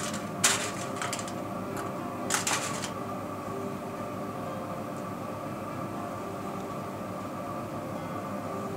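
Hair rustling in a few short bursts as a front roll of hair is pinned in place, the bursts within the first three seconds, then only a steady background hum.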